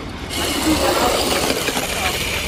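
Radio-controlled model car pulling away across wet paving stones, a steady whirring of its motor and gears with tyre hiss that starts suddenly about a third of a second in.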